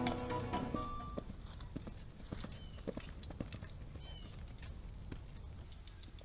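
Music fades out within the first second, then a horse's hooves clip-clop faintly and irregularly as it walks.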